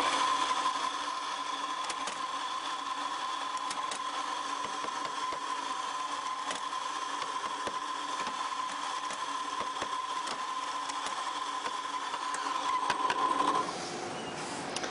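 Rancilio espresso grinder motor grinding coffee beans, a steady whine. It gets louder for a moment near the end, then cuts off abruptly.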